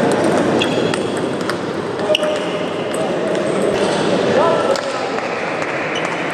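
Table tennis ball clicking sharply off bats and the table during a rally, several separate hits over a steady background of indistinct voices.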